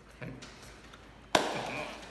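A single sharp smack about two-thirds of the way through, followed by a brief low voice sound.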